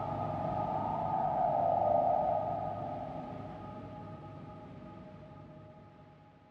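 Ambient space music: a few steady, held drone tones with a soft swell that builds over the first two seconds, then everything fades out slowly.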